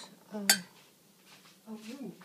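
Metal spoon clinking and scraping against a stainless steel saucepan, one sharp clink about half a second in, then fainter scrapes: a harsh metal-on-metal sound.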